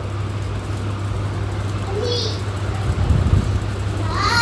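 Chopped onion and pointed gourd pieces frying in hot oil in a wok: a steady, even sizzle, with a low hum underneath.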